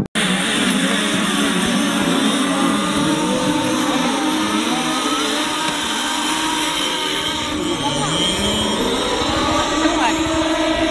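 Engines of radio-controlled model racing boats running at high revs: a loud, steady buzz with some rises and falls in pitch as the boats race across the water. Voices mix in.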